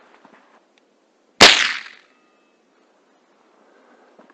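A single gunshot about a second and a half in, dying away over about half a second: a shot at a black-tailed jackrabbit that missed.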